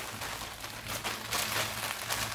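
Plastic-wrapped packs of cotton pads rustling and crinkling softly as they are handled.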